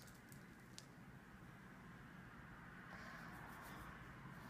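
Near silence: quiet room tone with a faint tick about a second in, then soft rubbing near the end as Play-Doh is rolled between the palms.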